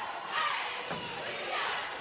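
Basketball arena game sound: steady crowd noise in a large hall, with a ball bouncing on the hardwood court.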